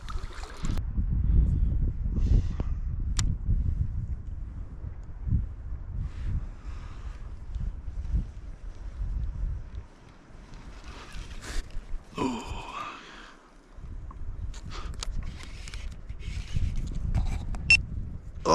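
Water sloshing and knocking against a plastic kayak hull, heard as a low, uneven rumble, with a few light clicks.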